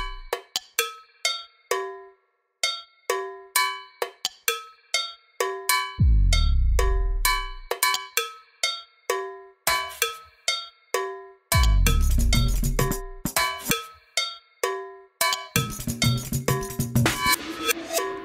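Instrumental soundtrack music of short, struck, bell-like metallic percussion notes in an uneven rhythm. A deep falling bass note comes about six seconds in and again near twelve seconds. The notes get busier in the last few seconds.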